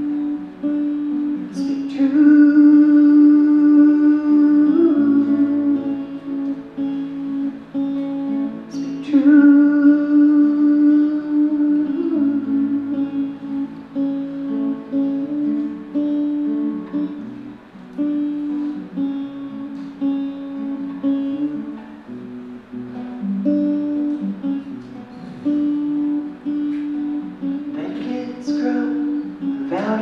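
Solo acoustic guitar playing an instrumental passage in a folk song: sustained ringing notes, with chords struck about two seconds in, again about nine seconds in, and near the end.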